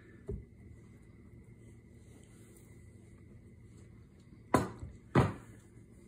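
Quiet kitchen room tone with a faint steady high hum, one light knock just after the start, and two short sounds near the end, the first of them the spoken word "and".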